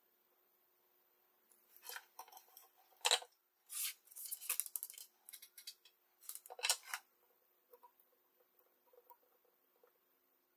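Wire strippers working on insulated hookup wire: a run of short, sharp snips and scrapes between about a second and a half and seven seconds in.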